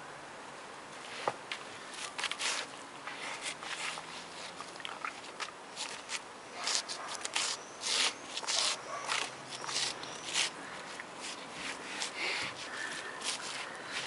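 Brown bear cub nosing and pawing about in dry dirt and straw close by: irregular short rustles and scuffs, busiest from about six to nine seconds in.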